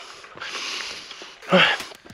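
A runner's heavy breathing: a long noisy breath out, then a short voiced grunt about a second and a half in.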